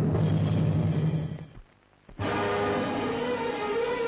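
1970s Hindi film title music: a sustained low chord that dies away about a second and a half in, a half-second gap of near silence, then the orchestra comes back in with a busier, higher passage.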